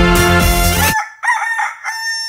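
Music ends abruptly about a second in, and a rooster crows: a few short notes, then a long held one.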